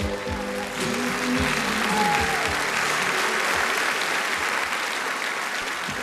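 A pop song's closing bars fade out about three seconds in. A studio audience's applause rises under them and carries on after the music has stopped.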